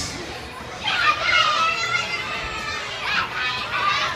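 Young children's high-pitched voices calling out and chattering, in two stretches: one about a second in and one near the end.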